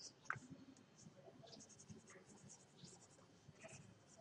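Faint scratching of a pen writing on paper, with one small sharp tick about a third of a second in.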